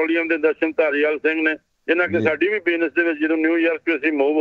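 Speech only: a man talking in Punjabi.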